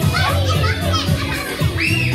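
A crowd of young children shouting and chattering excitedly over loud dance music with a steady beat, one child letting out a loud high-pitched shout near the end.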